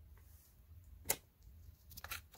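A single sharp click a little after a second in, over a faint low hum.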